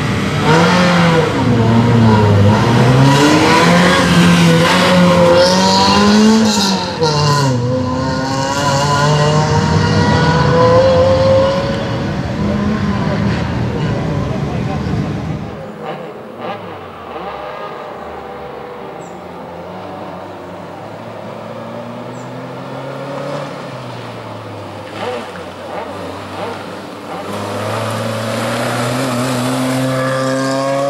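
Suzuki Swift slalom car's four-cylinder engine revving hard as it pulls away, the pitch climbing and falling with each gear change. After a cut it is heard faint and far off, then grows louder with rising revs near the end as the car approaches.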